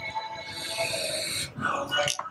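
A breathy hiss lasting about a second as a person draws hard on an e-cigarette, over faint background music, with a short vocal sound near the end.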